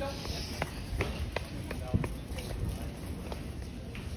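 Footsteps on a hard floor, a sharp click roughly every half second, over a steady low background rumble and faint voices.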